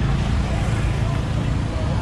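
Motorbikes and cars passing close by on a busy street: a steady low traffic rumble.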